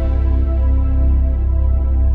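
Ambient synthesizer film-score music: a steady deep drone under sustained, slowly shifting chords, the upper register gradually dimming.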